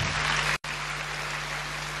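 Applause from a large seated audience, a steady dense clatter of many hands clapping, with a momentary break about half a second in.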